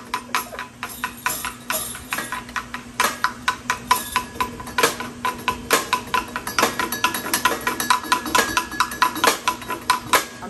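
A Teufelsgeige (devil's fiddle or stumpf fiddle) played with a notched drumstick: a fast, uneven run of clacks and rattles from the stick on the pole, with its bells and cymbal jingling and a bell tone ringing on underneath.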